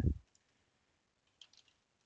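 Faint computer keyboard keystrokes: a single click near the start, then a short cluster of three or four light clicks about a second and a half in.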